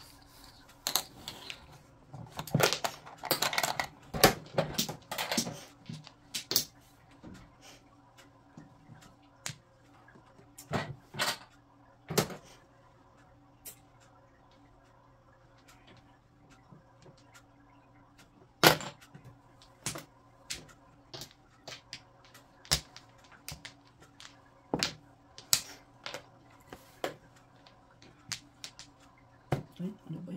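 Mahjong tiles and plastic chips clacking: a dense run of clicks in the first few seconds, then single sharp clacks every second or two as tiles are drawn and set down, over a faint steady hum.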